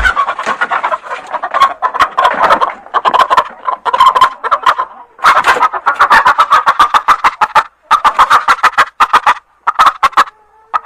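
Chicken clucking in rapid runs of short, loud clucks, broken by brief pauses, with no beat behind it.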